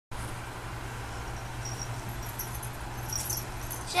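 Faint, brief light jingles of a kitten's collar tag, a few times and mostly near the end, over a steady low hum.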